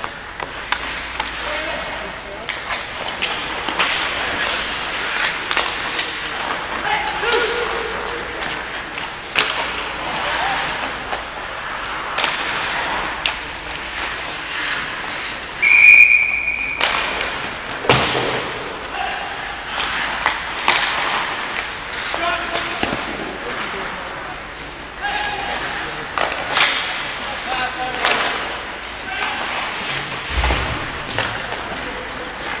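Ice hockey practice on a rink: sticks and pucks knocking sharply again and again, with players' voices calling out. About halfway through, a single short whistle blast, the loudest sound.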